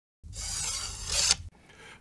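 A whoosh transition sound effect: one airy rush of noise that starts a moment in, grows louder and cuts off suddenly after about a second.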